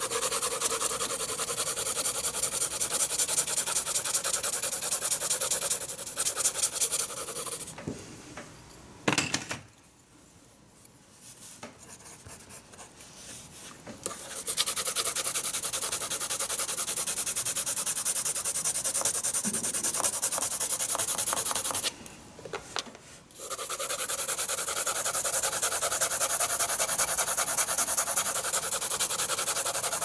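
Hard graphite pencil scratching rapidly back and forth on drawing paper, hatching and cross-hatching a shading square. The scratching is steady, breaks off for a few seconds about a third of the way through with a single sharp tap, and stops again briefly past two-thirds.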